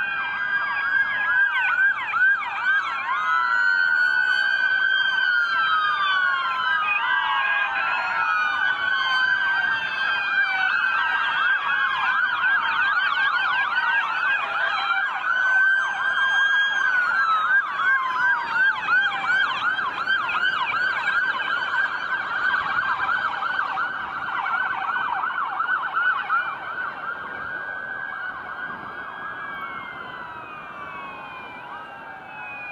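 Sirens of many police cars and other emergency vehicles sounding at once, slow wails overlapping with fast yelps. The sound eases off over the last few seconds.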